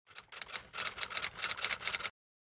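Typing sound effect: a rapid run of keystroke clicks, about eight a second, growing louder as it goes.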